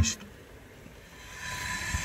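A swig from a clear glass bottle tipped up to the mouth: a rising rush of liquid and air starting about a second in.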